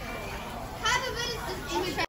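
People's voices: a short high-pitched exclamation about a second in, over faint background chatter.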